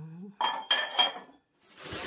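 A glazed ceramic flower pot is set down on a hard floor, clinking twice with a short ringing tone. Near the end, bubble wrap rustles.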